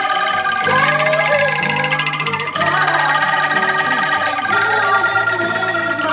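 An angklung ensemble of shaken bamboo rattles holds trembling chords that change every couple of seconds. An acoustic guitar accompanies, and voices sing the melody over it.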